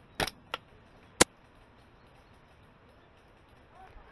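Three sharp clacks from a Silverback Tac41 bolt-action airsoft sniper rifle within about a second, the last the loudest: the rifle being fired and its bolt worked.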